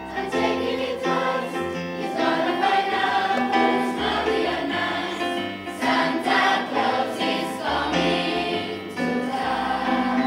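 A choir of teenage secondary-school students singing a song together, many voices in unison, held notes moving from one to the next.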